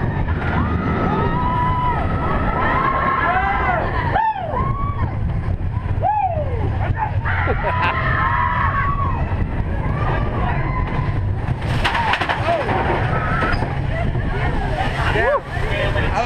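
Big Thunder Mountain Railroad mine-train roller coaster running along its track with a steady low rumble, while riders let out long rising-and-falling screams and whoops over it.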